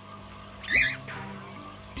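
Quiet background music, with one short, loud cockatiel call about three-quarters of a second in.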